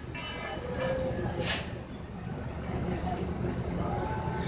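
Steady low hum of café room noise, with faint voices in the background and a brief hiss about one and a half seconds in.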